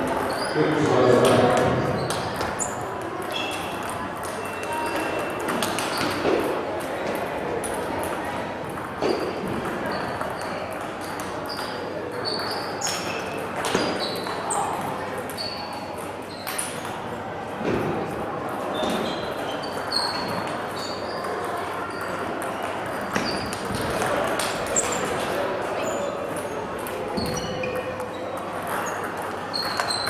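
Table tennis ball clicking off bats and the table in rallies, one short sharp tick after another, over steady background voices in a sports hall.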